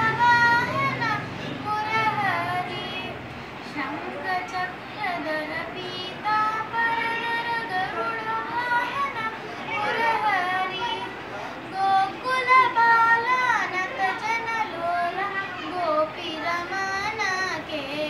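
A young girl singing solo, her voice holding notes and sliding through ornamented, gliding melodic turns.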